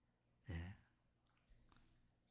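Near silence, broken about half a second in by a man's single short, soft spoken "ye" (Korean for "yes").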